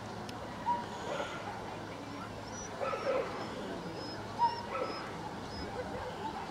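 A dog giving a few short yips and whimpers: brief sharp yelps about a second in, around three seconds, and again past four seconds.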